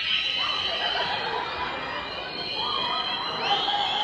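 A theatre audience whistling together: many overlapping, sustained high whistles, a few of them rising in pitch near the end. The whistling is the cue for the hypnotised volunteers to dance faster.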